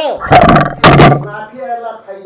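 Two loud thumps about half a second apart on a podium packed with microphones, hitting the top of the level, with a man's raised speaking voice before and after.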